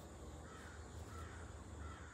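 A bird calling faintly three times, short calls about half a second apart, over a low steady background hum.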